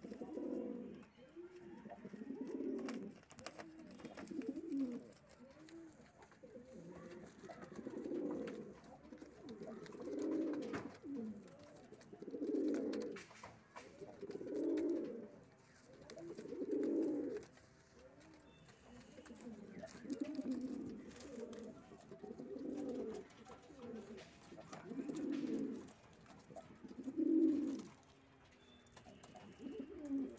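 Giribaz pigeons cooing: a low, rolling coo repeated in phrases about every two seconds.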